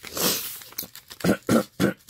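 A woman clearing her throat: a rasping start, then three short, harsh bursts in the second half.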